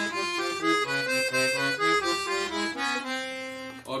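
Pigini free-bass accordion playing a quick ascending and descending scale run with both hands, the notes changing several times a second in a higher and a lower line. The run ends on a held note near the end.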